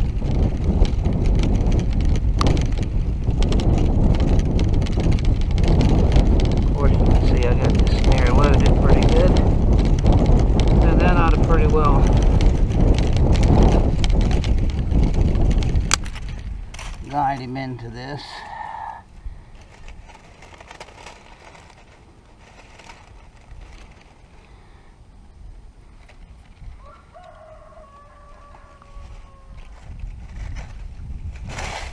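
Wind buffeting the microphone with a loud low rumble for about the first sixteen seconds, then dropping away. In the quieter part a couple of poultry calls with a bending pitch are heard, one about three seconds after the wind drops and another near the end.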